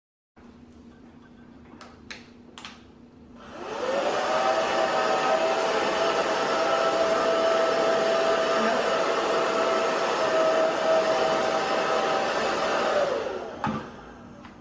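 Handheld blow dryer switched on about three and a half seconds in, its motor whine rising to a steady pitch under a loud even rush of air as it blows on a wet dog's coat. Near the end it is switched off and the whine falls away. A few faint clicks come before it starts.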